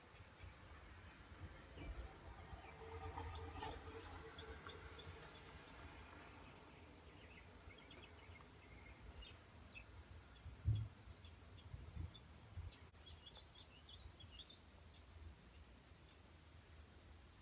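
Very quiet room tone with faint, scattered bird chirps through the second half. There is a soft knock about eleven seconds in.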